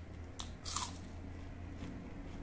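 A crisp crunch as a piece of raw onion is bitten close to the microphone, one sharp bite about three-quarters of a second in after a small click, over a steady low hum.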